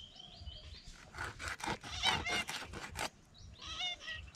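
Birds calling: a run of short repeated notes at the start, a louder burst of chirps about two seconds in, and another call near the end. Under them are clicks and rustles from hands cleaning small fish on a wooden board.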